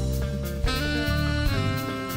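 A live band playing, led by an alto saxophone over drum kit and bass. The saxophone moves to a new note about half a second in and again near the end.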